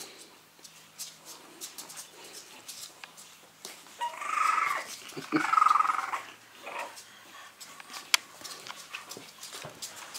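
Three-week-old French bulldog puppies moving on a tile floor: faint scuffling and small clicks, with one sharp click just past eight seconds. A person laughs twice in short breathy bursts about four to six seconds in.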